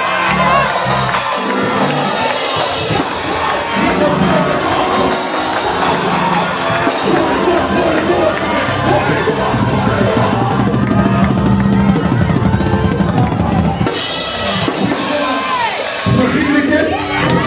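Live church band playing loud, driving worship music led by a drum kit with bass drum and snare, with congregation voices and shouts over it.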